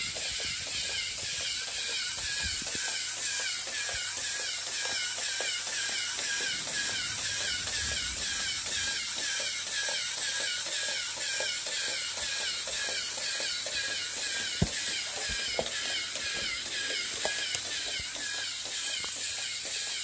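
Lego EV3 walking robot's motors and gear train whining, the whine wavering in a steady repeating rhythm with the stride, with light clicking ticks from the plastic leg linkages.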